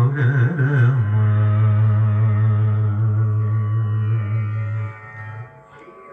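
Carnatic-style devotional song to Rama sung by a male voice. An ornamented, wavering phrase in the first second gives way to one long low note held steady for about four seconds, which then fades away near the end.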